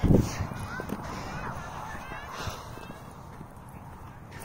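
A low thump as the handheld phone is jostled right at the start, then a few faint short calls that glide up and down in pitch over low rustling.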